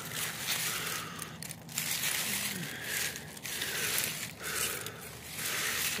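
Leafy garden plants rustling and crackling as a hand pushes through and parts the leaves, in a run of bursts about a second apart.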